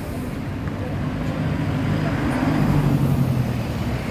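Street traffic: a motorbike engine draws near and passes close by, its hum growing louder from about two seconds in, over the steady noise of passing cars.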